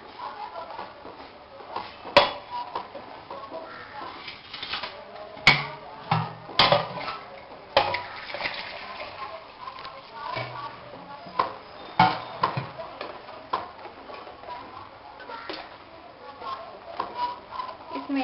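A steel spoon stirring liquid in a stainless steel pot, knocking sharply against the pot about five times.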